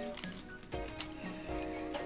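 Soft background music with held notes, over the crinkle and tear of a foil trading-card booster pack being ripped open, with a few short sharp crackles, the sharpest about a second in.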